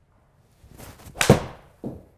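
A 7-iron golf swing: the club whooshes through and strikes the ball off a hitting mat with a sharp crack, the loudest sound, about a second and a quarter in. About half a second later there is a shorter thud as the ball hits the simulator's impact screen.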